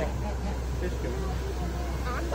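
Indistinct people's voices over a steady low rumble.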